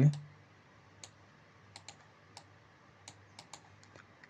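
Scattered light clicks of a computer keyboard and mouse, about eight separate clicks spaced irregularly over a few seconds.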